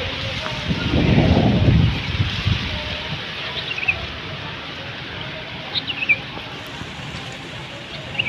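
Outdoor background noise with a few faint, short bird chirps, two of them close together past the middle of the clip, and a brief low rumble about a second in.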